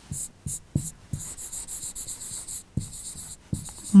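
Chalk scratching on a chalkboard as words are written, in a series of short strokes with brief gaps between them and light taps as the chalk meets the board.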